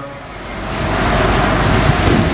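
A steady rushing hiss, dipping at the start and then swelling louder over the two seconds.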